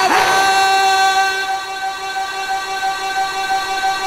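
A man's voice over a loudspeaker system holding one long, unbroken chanted note at a steady high pitch, growing quieter after about a second as the breath runs out.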